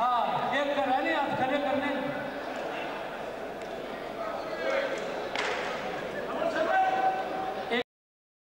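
Men's voices calling and talking over one another in a large hall, with one sharp smack a little past the middle. The sound cuts out abruptly at the very end.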